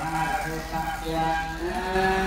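Buddhist monks chanting Pali in unison: a low monotone drone of held syllables that steps up slightly in pitch near the end.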